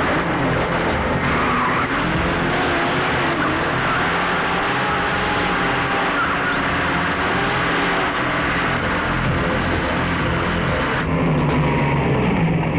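Movie chase sound effects: car engines running hard with wavering, squealing tyres, a dense, loud mix that continues unbroken.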